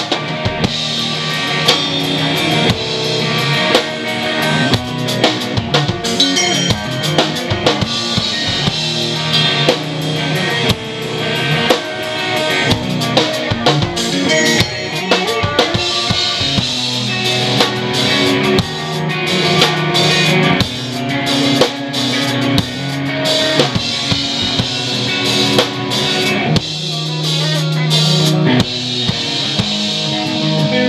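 An instrumental post-hardcore band playing. A DW drum kit's bass drum, snare and cymbals are hit hard and densely under distorted electric guitars.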